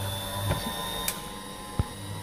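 Small bench drill press motor running with a steady hum, and a few sharp clicks and a dull knock of the drill and the harmonica slider being handled and set up for drilling.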